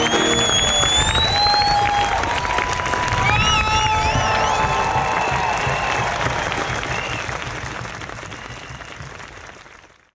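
Large outdoor crowd applauding and cheering, with a few high tones gliding up and wavering above the clapping in the first half. The sound fades out steadily over the last four seconds.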